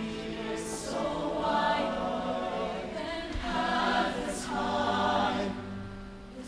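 Mixed show choir singing sustained harmony in swelling phrases, with crisp 's' consonants about a second in and again past the four-second mark.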